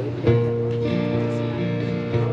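Acoustic guitar strumming the opening chords of a song, a chord struck about a quarter second in and left ringing.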